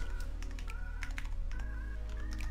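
Computer keyboard keys clicking in short, irregular keystrokes as code is typed, over background music.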